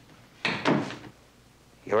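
A heavy wooden door being handled by hand: a sudden clatter about half a second in that dies away within about half a second.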